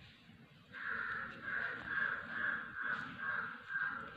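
A bird calling in a rapid run of about nine evenly spaced calls, starting about a second in.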